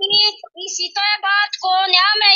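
A woman crying aloud in a high, drawn-out wailing voice, with several long held cries in a row.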